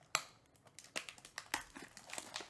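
Plastic wrapping on a trading-card pack crinkling and crackling in the hands as the pack is unwrapped: an irregular run of sharp crackles, the loudest just after the start.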